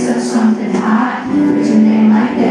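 Live rock band performance: a male lead singer sings long held notes into the microphone over the band's music.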